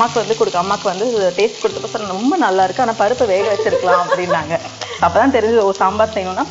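Chopped onions sizzling as they fry in oil in a pan, under a louder pitched sound that rises and falls throughout.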